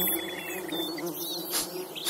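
Nature ambience: a steady insect buzz with small birds chirping over it, and a short noisy swish about one and a half seconds in.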